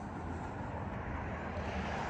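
A car running steadily: a low rumble with an even hiss that swells slightly near the end.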